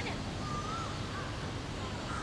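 A few short whistled bird calls, each a brief rising-and-falling note, over a steady low rumble of a boat's engine.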